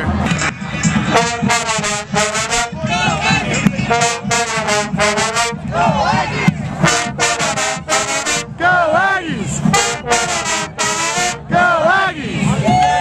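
University pep band playing a tune at close range, led by its brass: trumpets, trombones and a sousaphone. The notes come in loud phrases broken by short gaps.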